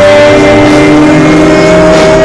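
Live rock band playing loud, with long held electric guitar notes that sustain steadily.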